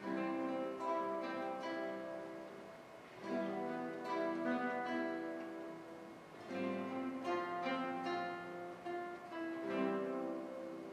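Classical guitar ensemble starting to play: plucked chords and notes in phrases that begin about every three seconds, each dying away before the next starts.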